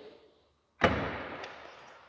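Trunk latch of a 2017 Volkswagen CC sedan releasing with a single sharp clunk a little under a second in, as the trunk lid is opened. The noise of the clunk fades over about a second.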